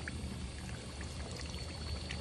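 Crushed dried chili flakes frying in hot oil in a pan: a steady sizzle with scattered small pops.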